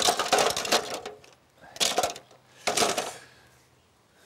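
Tools being dropped into a plastic toolbox, clattering in three bursts: a longer rattle at first, then two shorter ones about two and three seconds in.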